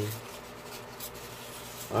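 A sheet of paper being torn slowly by hand, a faint rustling tear.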